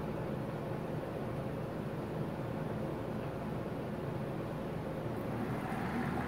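Steady electric hum and hiss of an aquarium air pump running, feeding an air line that bubbles in a plastic tub of water.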